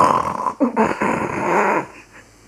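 A loud, harsh growl that starts suddenly and lasts almost two seconds, with a short falling pitched note partway through.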